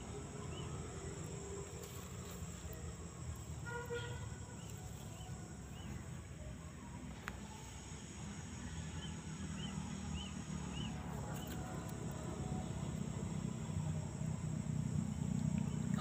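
Faint outdoor ambience: a small bird's short high chirps in a few quick runs, over a steady low rumble and a faint high hiss.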